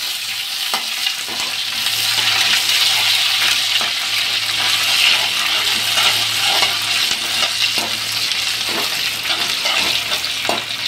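Freshly added sliced onions sizzling steadily in hot mustard oil in a kadhai, with a metal spatula stirring and scraping against the pan now and then.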